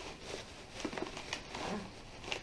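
Clear plastic packaging being handled, giving faint crinkling with a few short sharp crackles.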